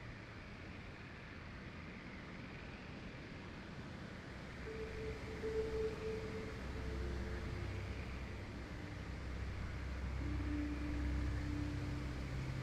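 Faint steady background hiss with a low hum that grows slightly louder partway through, and a few faint held tones.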